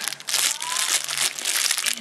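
Loud rustling, crinkling handling noise as a bunch of makeup brushes with metal ferrules is shuffled and turned in the hands close to the microphone.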